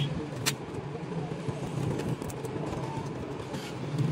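A steady low background hum, with a single sharp click about half a second in and a few fainter clicks later.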